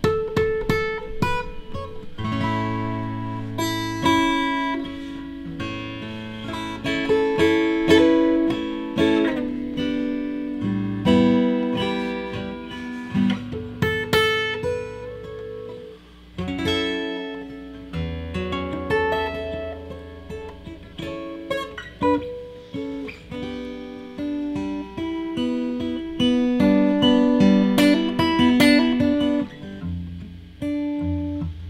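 Taylor 114e grand auditorium acoustic guitar played fingerstyle: a slow solo instrumental, with plucked bass notes under a melody. There is a short lull about halfway through before the next phrase begins.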